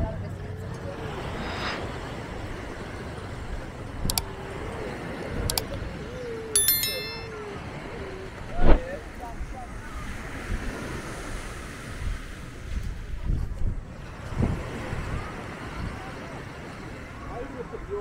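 Busy beach ambience: voices of many people at a distance over a steady wash of surf and wind on the microphone. A wavering pitched tone runs through the first several seconds, with a few sharp clicks and a loud knock about halfway through.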